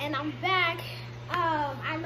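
A high-pitched voice singing in short, gliding phrases, with a steady low hum underneath.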